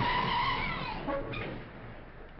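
Car tyres screeching for about a second over engine and road noise, then fading.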